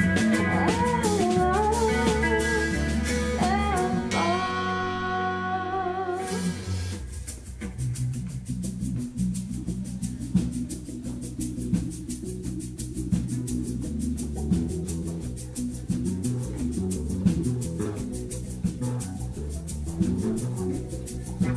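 Live band music: a woman sings over electric guitars and a drum kit for about the first six seconds, then the voice stops and the band plays on, guitars over a quick, steady ticking beat.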